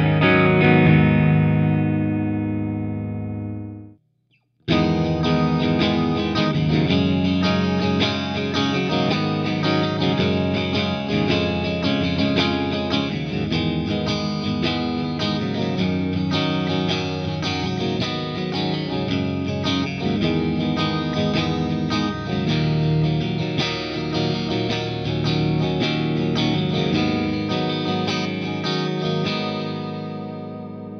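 Electric guitar playing chords through a clean vintage Fender Bandmaster tube amp with delay. A ringing chord dies away, the sound cuts out briefly about four seconds in, then the chord playing runs on and fades near the end.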